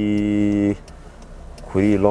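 A man's voice holding one steady, unchanging vowel for under a second, then a short pause, then talking again near the end.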